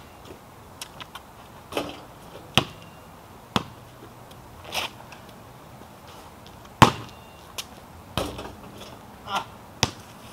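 A basketball bouncing and thudding on a paved driveway: about ten irregular thuds, the loudest about seven seconds in.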